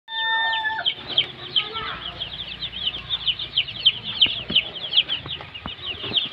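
A brood of young chicks peeping continuously: rapid, overlapping high peeps, each sliding downward, several a second. A short steady tone sounds at the very start.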